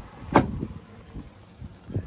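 A single sharp knock about a third of a second in, followed by faint low rumble and a few small clicks.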